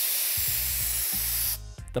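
Aerosol spray-paint can hissing in one long spray that cuts off about a second and a half in, over a low music bed.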